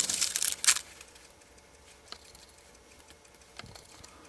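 A sheet of paper rustling and crinkling as it is handled and slid into place under a model bridge arch, in the first second or so; then it goes nearly quiet, with a couple of faint light taps.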